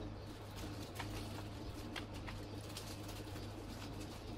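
Raw potato slices laid by hand into a metal baking tin, making a few soft clicks, over a steady low hum. A dove coos faintly in the background.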